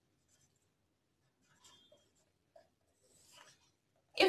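Near silence, with a few faint strokes and a brief light squeak of a marker pen writing and drawing lines on a whiteboard.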